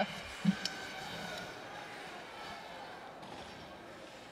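Hockey rink ambience: a low murmur of crowd voices and arena noise that slowly fades, with one sharp knock a little over half a second in.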